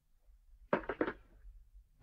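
A telephone receiver being put down on its cradle as the call ends: a short cluster of clicks and clunks about three quarters of a second in.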